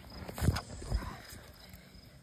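Two dull, low thumps about half a second apart, handling knocks on the phone or the drone being moved, then faint outdoor background.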